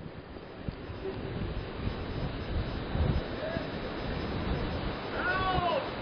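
A steady rush of harbour water and wind noise as a strong tsunami-driven current flows back out past a docked boat, growing slightly louder. A faint, high, wavering call sounds near the end.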